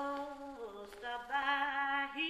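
A women's gospel vocal group singing unaccompanied as the song opens. A long held note dips and breaks about half a second in, and a new sung phrase begins just after a second in.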